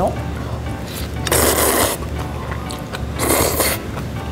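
A person slurping instant noodles: two loud slurps, the first about a second and a half in and the second near the end.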